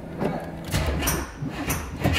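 Buick 455 V8 idling just after being started, a steady low rumble, with two brief clattering noises, one about the middle and one near the end.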